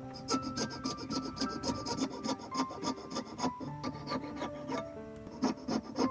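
Hand file rasping back and forth over a small piece of coconut shell clamped in a vise, quick strokes about three or four a second, with a short pause near the end before the strokes resume.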